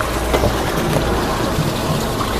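Steady rush of running water as a fish tank is drained through a hose.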